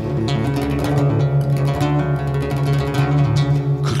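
Acoustic guitar playing a quick instrumental run of plucked notes over a ringing low note, filling the gap between sung lines of a Turkish folk song.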